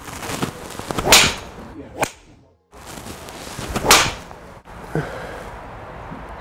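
Two golf driver swings, each a rising swish that ends in the sharp crack of the driver head striking the ball. The swings are about three seconds apart, with a brief dropout between them. The club is a PXG Black Ops Tour driver head.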